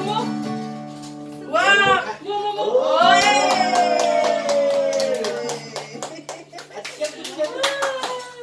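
An acoustic guitar chord rings on while people cry out in cheer, one long falling "woo" after a shorter shout, then a group claps hands for the last few seconds as the chord fades.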